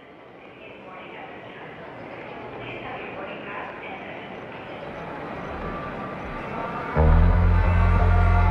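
Intro of a French-language pop-rock song: a dense layer of indistinct, voice-like sound fades in and slowly swells, then a loud bass comes in suddenly about seven seconds in as the band starts.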